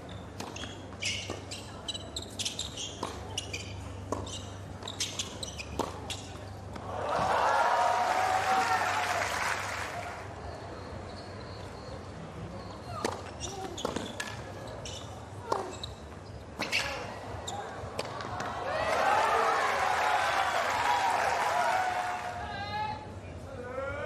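Tennis rallies on a hard court: a run of racket-on-ball strikes and ball bounces, then crowd cheering and applause for about three seconds at the end of the point. This happens twice.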